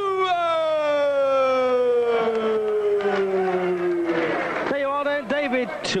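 A boxing ring announcer's voice drawing out the surname "Tua" in one long call of about four seconds, falling slowly in pitch, with crowd noise swelling beneath it in the second half. Ordinary commentary speech takes over near the end.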